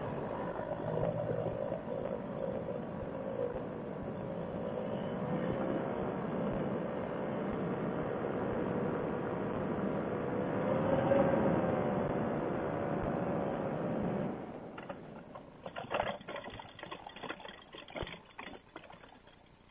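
Fresh Breeze Monster paramotor engine running at low power, its pitch wavering slightly, over wind and rolling noise as the trike rolls out on grass; it cuts out about fourteen seconds in. After that come irregular rustling and clicks as the wing comes down.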